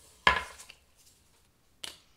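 Two sharp knocks of hard objects set down on a tabletop as a tarot card and a small tumbled crystal are moved. The first, about a quarter second in, is the louder and rings briefly; the second, near the end, is fainter.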